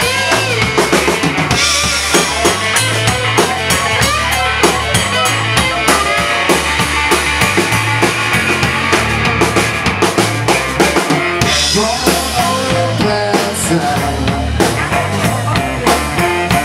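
Live blues band playing an instrumental break: drum kit with kick and snare keeping a steady beat under a pulsing bass line, with a resonator electric guitar playing lead.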